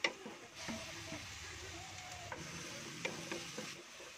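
Pork strips, garlic and sliced onions frying in oil in a pan, stirred with a wooden spatula. A sharp knock of the spatula at the start, then a steady sizzle from about half a second in until near the end, with a few more spatula knocks.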